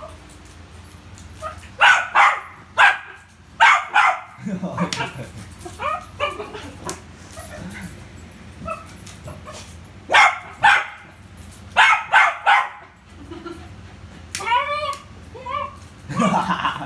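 Poodle barking at a balloon, short sharp barks in clusters of two or three, with a quicker run of yips near the end.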